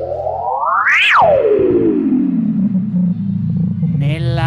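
A synthesizer pitch sweep: one eerie sliding tone glides smoothly up to a high peak about a second in, then slides back down over the next two seconds, over the band's steady backing.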